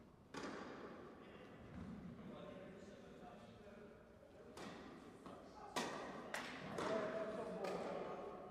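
Tennis ball hit with rackets and bouncing on an indoor court in a large reverberant hall: a few sharp hits from about four and a half seconds in, several close together in the second half, with faint voices.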